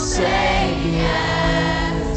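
Live acoustic band performance of a slow rock song: sustained chords with voices singing between the lead vocal lines.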